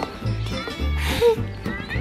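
Background music with a steady bass beat, about two beats a second, with a child's voice over it.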